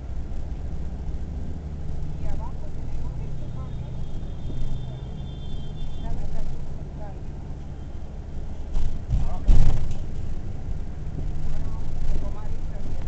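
Steady low drone of a moving road vehicle's engine and road noise. A brief loud burst of noise comes about nine to ten seconds in.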